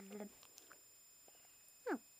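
A small Yorkshire terrier's vocal sounds as she sleeps. A low, steady hum fades out just after the start, then near the end comes one quick squeak that falls sharply in pitch.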